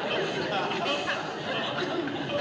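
Studio audience laughter dying away after a joke, thinning to scattered laughs and murmurs.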